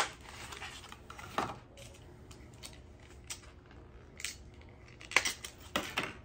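Clear plastic lure package crackling and clicking as it is worked open by hand and the lure is pulled out, with a sharp click at the start, scattered single clicks and a quick cluster of clicks near the end.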